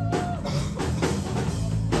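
Live band playing a rock song, with a steady drum-kit beat over bass. A sung note is held at the start, and the singer begins the next line at the very end.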